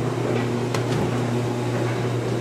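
Steady household appliance hum, with one light click near the middle as a refrigerator door is pulled open.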